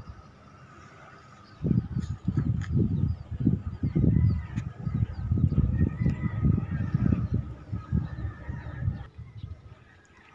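Wind buffeting the phone's microphone in gusts, a loud irregular low rumble that starts about a second and a half in and eases off near the end.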